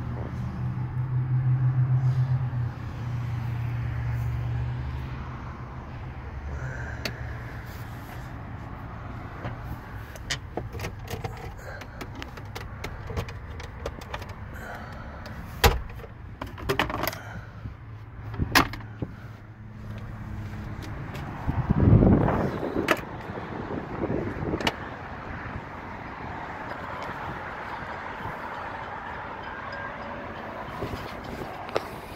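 Inside a car: a steady low hum for about the first twenty seconds, with scattered clicks and knocks of handling in the cabin. A heavy car-door thump about 22 seconds in, with a smaller knock a few seconds later.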